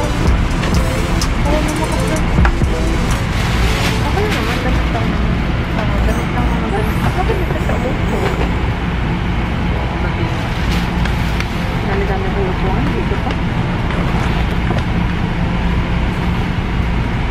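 Steady low rumble of a passenger train running, heard from inside the carriage, with indistinct voices over it.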